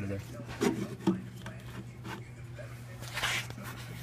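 Phone scraping and rubbing against the sheet-metal edges of a dryer's opened fan housing as it is pushed inside. A steady low machine hum runs underneath, with a brief louder scrape about three seconds in.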